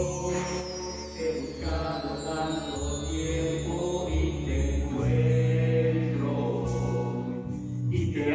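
Slow worship song played by a church band without singing: guitar and electric bass holding sustained chords. A shimmer of bar chimes rings and fades near the start, and a deeper bass note comes in about five seconds in.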